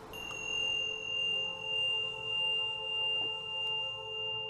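A handheld clear crystal singing bowl struck once, ringing with a bright high tone over several lower tones. Its loudness swells and sinks slowly about twice a second as it starts to fade.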